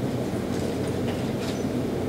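Steady low rumble of room noise picked up by the lectern microphones, with a few faint scratches of a pen writing on paper.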